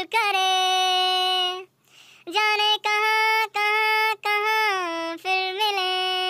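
A high-pitched voice singing long, held notes without audible accompaniment, broken by a short pause about two seconds in.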